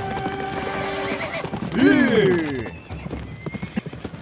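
Horses galloping, their hooves beating on a dirt track, with one horse giving a loud whinny about two seconds in that rises and then falls in pitch. Near the end only the uneven clatter of hoofbeats remains.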